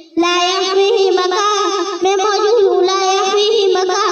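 A boy's voice chanting in long, wavering held notes, with a brief breath just at the start.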